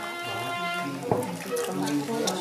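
Water poured from a cup over a carved panel, splashing into a plastic basin, under women's voices and music. A held musical note with many overtones fades out within the first second, and a short knock comes about a second in.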